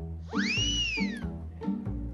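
Background sitcom music with a steady beat. About a quarter second in, a pitched sound effect glides up and then down over about a second.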